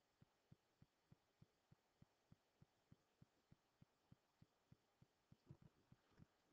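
Near silence: faint room tone with a soft, regular tick about three times a second.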